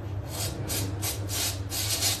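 Quick rhythmic rubbing strokes against a surface, about four a second, each a short scratchy swish.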